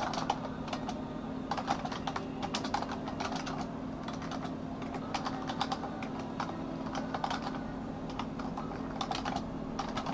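Typing on a computer keyboard: irregular runs of keystrokes broken by short pauses, over a steady low hum.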